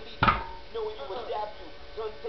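A loaded 225-lb barbell's plates thudding onto the pavement once, a quarter second in, as a deadlift rep touches down.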